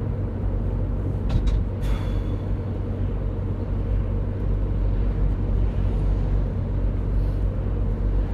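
Steady low rumble of a moving van's engine and road noise inside the cabin, with a couple of brief clicks about one and a half to two seconds in.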